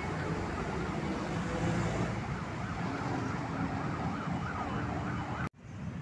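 Busy city street traffic noise with passing vehicles. The sound drops out abruptly about five and a half seconds in, then the traffic noise resumes.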